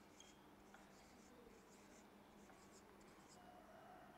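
Faint scratching of a marker pen writing on a whiteboard, in short strokes with brief pauses between them.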